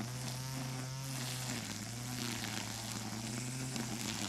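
Cordless battery-powered string trimmer running steadily, its spinning nylon line cutting grass: a steady hum whose pitch dips briefly about a second and a half in.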